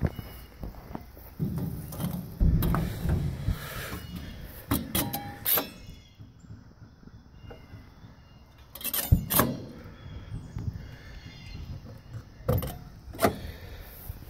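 Doors and latches of a steel horse trailer being handled as they are opened: scattered knocks and clanks, the loudest pair about nine seconds in, with a short spell of low rumbling handling noise near the start.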